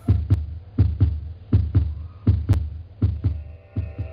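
Heartbeat: pairs of low thumps (lub-dub) repeating about every three-quarters of a second, roughly 80 beats a minute, over a low steady hum.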